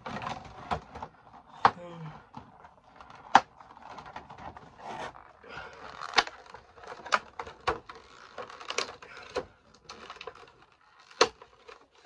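A cardboard Funko Pop box and its clear plastic insert being handled: crinkling with irregular sharp clicks and taps, the loudest few standing out as single knocks.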